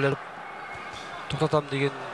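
Male sports commentator speaking in Russian over low, even arena crowd noise, with the talk pausing for about a second in the middle and a single dull thud just before it resumes.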